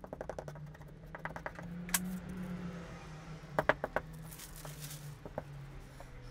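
Quick strokes of a small paintbrush over the glass tile of a wooden sharpening holder, heard as a rapid run of light ticks, followed by a few separate light knocks and a brief rustle as a sandpaper sheet is laid on the tile. A low steady hum runs underneath.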